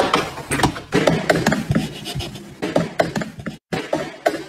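A baby goat's hooves clattering on a hard floor as it runs and prances: a dense run of quick, irregular taps and clicks. The taps stop briefly near the end and then start again.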